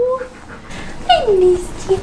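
A husky giving a single falling whine about a second in, with a short squeak just before the end.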